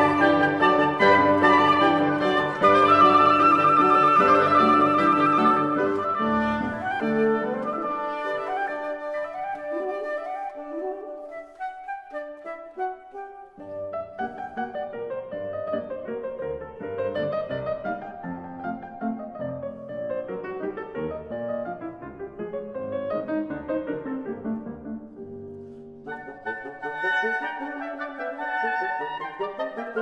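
Piano and woodwind quintet (flute, oboe, clarinet, horn and bassoon) playing Romantic chamber music. A loud passage for the full ensemble dies away, the piano alone then plays a light, quick staccato passage, and near the end the woodwinds come back in softly.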